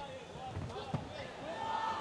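Fight-arena sound: faint shouting voices and a single dull thud about halfway through, the kind of impact a strike or a bare foot landing on the canvas makes.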